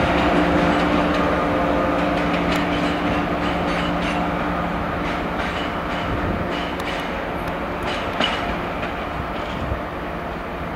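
A Great Western Railway Intercity Express Train moving away over the pointwork: a steady hum from the train that slowly fades, with its wheels clicking over rail joints and points for several seconds.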